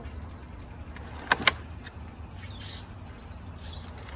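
Scissors snipping twice in quick succession about a second and a half in, cutting back willow stems, over a steady low hum.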